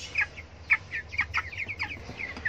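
A flock of three-week-old white broiler chicks peeping, with short high calls overlapping several times a second.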